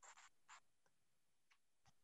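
Near silence: room tone, with a few faint short ticks in the first half second.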